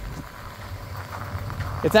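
Tractor engine idling with a steady low rumble; a man starts talking near the end.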